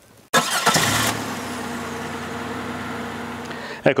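A motor starts abruptly, loudest for the first moment, then runs steadily with an even hum for about three seconds before cutting off suddenly.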